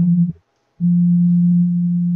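A steady low sine tone from a Csound-synthesized electronic piece playing back. It cuts out about a third of a second in and comes back about half a second later, holding at one pitch.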